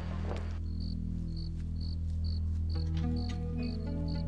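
Crickets chirping at night, a short high chirp about twice a second, over a low sustained music score that swells with added notes near the end.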